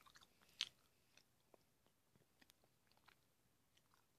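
Faint chewing of a mouthful of candy: scattered small wet mouth clicks, with one sharper click about half a second in.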